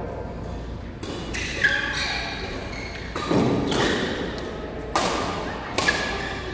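Badminton rackets hitting a shuttlecock during a doubles rally: about five sharp cracks a second or so apart, each with a short echo from a large hall.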